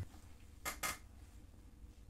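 Two short clicks close together, just over half a second in, over a faint low hum.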